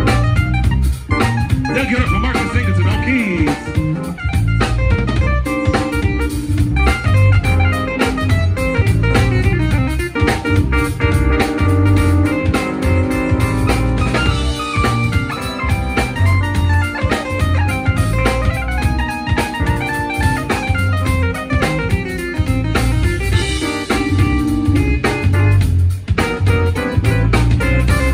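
Live band playing an instrumental groove: a drum kit and a pulsing plucked bass line under keyboard and guitar parts, with no singing.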